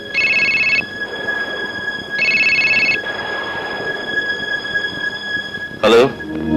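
Telephone ringing twice, each ring a short electronic trill, about two seconds apart, over a faint steady hiss. A short loud burst comes just before the end.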